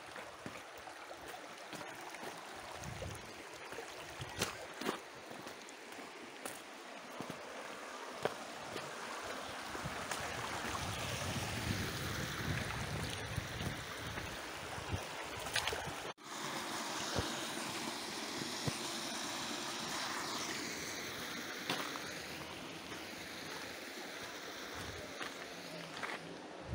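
Shallow mountain creek running over stones and gravel, a steady rush of water, with a few sharp clicks on top.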